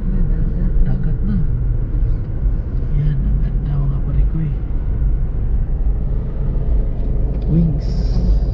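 Steady low rumble of a car's road and engine noise heard inside the cabin while driving, with indistinct voices talking low over it now and then.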